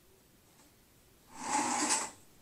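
A person's breath: one noisy exhale through the nose or mouth, lasting about half a second, near the end.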